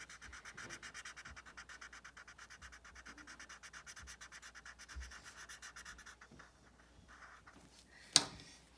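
Felt-tip marker scribbling on paper in rapid, even back-and-forth colouring strokes; it stops about six seconds in, leaving only a few faint strokes.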